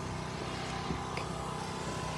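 Low, steady background hum with a faint steady tone and a few soft clicks.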